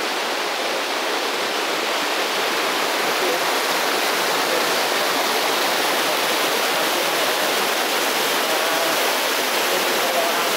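A rocky stream rushing steadily over boulders and shallow cascades: a continuous, even rush of water.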